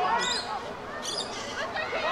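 Voices shouting and calling out on and around a rugby league field during play, with two short high-pitched calls, one early and one about a second in.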